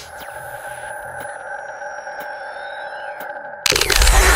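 Logo-animation sound effect: a steady sound of a few held tones, with faint high gliding lines and light ticks over it. It is cut off about three and a half seconds in by a loud, full burst as the intro music comes in.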